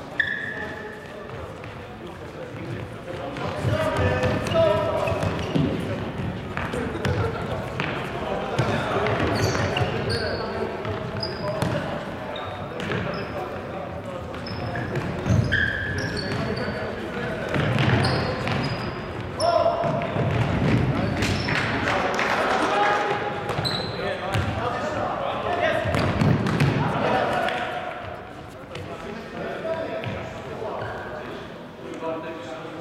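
Indoor futsal play on a wooden court in a large hall: players' voices calling out, repeated ball kicks and bounces, and short high squeaks of shoes on the floor.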